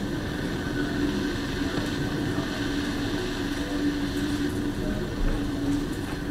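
Steady background noise with a constant low hum, unchanging throughout; no speech.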